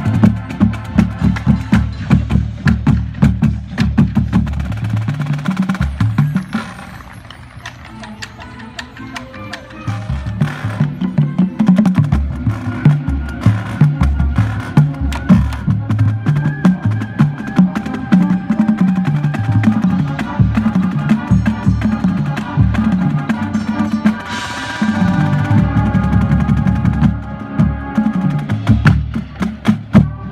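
Marching band drumline playing a fast, dense drum pattern, its tuned bass drums sounding stepped notes of different pitch, with the winds holding chords over it from about midway. The music drops to a softer stretch about a quarter of the way in, then builds back up.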